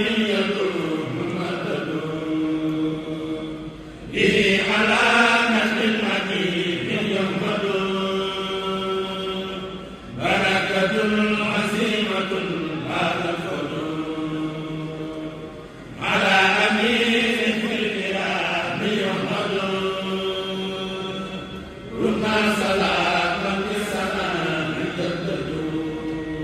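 Men's voices chanting a Mouride xassida (devotional poem) together, unaccompanied, in long sung phrases. A new phrase begins about every six seconds, each opening strongly and tapering off.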